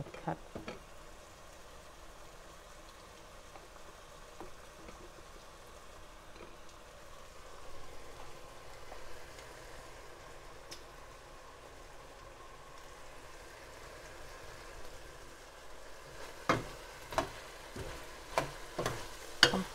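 A pot of chicken with curry aromatics sizzling faintly and steadily on the stove. A few sharp knocks near the end come from a spoon stirring against the pot.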